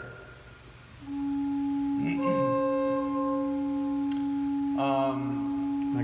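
Pipe organ sounding a steady held note, entering about a second in and sustained. A second, higher note joins about two seconds in and fades out a couple of seconds later.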